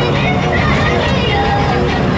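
A motor vehicle's engine and road noise, heard from inside the vehicle as it drives along an unpaved road, with a steady low rumble throughout.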